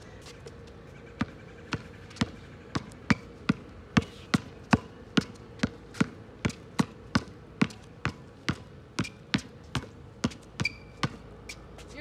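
A basketball dribbled hard on an outdoor hard court through repeated double crossovers and between-the-legs dribbles. The sharp bounces come about two to three a second in an uneven rhythm.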